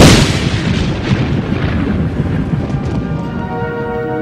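A sudden loud explosion boom, then a long rumbling decay. A held music chord comes in near the end.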